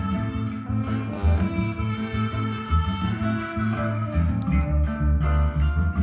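Music played back from tape on a Pioneer RT-1020H three-motor, three-head reel-to-reel deck, heard through hi-fi speakers: a guitar-led song over a strong bass line.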